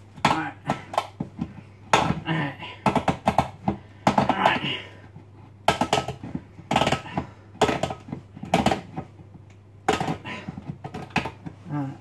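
Hand-held tin opener being cranked around the rim of a tin: a run of irregular sharp clicks and crunches as the blade cuts through the lid.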